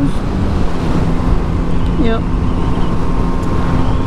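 Wind rumbling over a helmet microphone, with the steady hum of a Yamaha MT-09 SP's three-cylinder engine on a constant throttle at about 50 mph.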